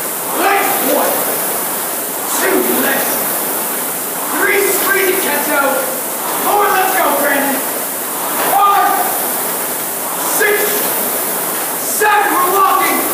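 A man's voice calling out coxing encouragement to a rower in short bursts every second or two, over the steady whoosh of an indoor rowing machine's flywheel fan.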